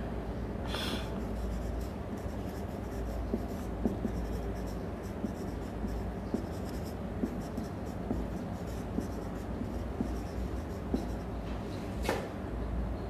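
Marker pen writing on a whiteboard: a continuous run of short strokes and small taps as words are written out.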